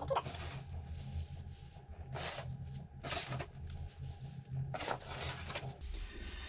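Shredded paper rustling in several short bursts as hands spread it over a worm bin's bedding. The footage is sped up, so the rustling is quickened and higher-pitched, over a steady low hum.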